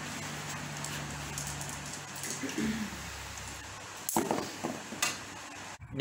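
Electric desk fan running with a steady rush of air and a low hum. A few short sharp sounds come about four and five seconds in.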